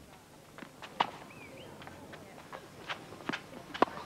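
Tennis rally: sharp pops of the racket hitting the ball and the ball bouncing, the loudest about a second in and another just before the end, with players' footsteps on the court between them.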